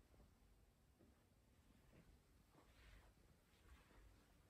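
Near silence: a desktop PC running a full Prime95 load on its CPU, cooled by a Scythe Mugen 5 Rev.B air cooler, is barely audible, a faint low hum that is pretty quiet. A few faint brief rustles come and go.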